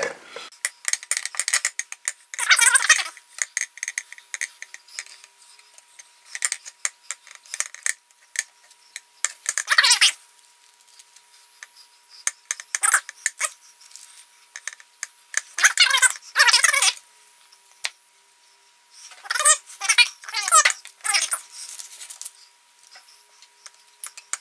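Raw bacon strips being handled and pressed over an upturned bowl on a plate: intermittent short bursts of handling noise with light clicks, separated by quieter gaps.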